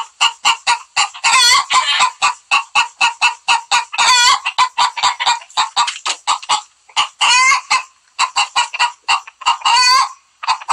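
Recorded hen egg-laying song played from a phone ringtone app: rapid clucks, several a second, broken every two to three seconds by a longer drawn-out squawk.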